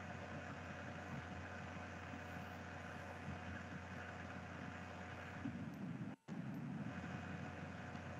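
Steady low hiss and hum of the audio line, with a few faint steady tones, cut by a brief total dropout a little after six seconds.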